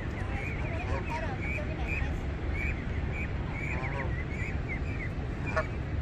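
Canada goose goslings peeping over and over, many short high calls, over a steady low rush of churning water.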